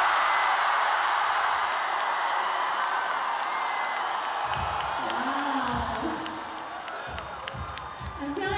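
Large concert crowd cheering, loudest at the start and slowly fading, while low music notes come in about halfway through.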